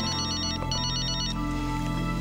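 Cell phone ringtone ringing twice, each a quick warbling trill of about half a second, over soft sustained background music.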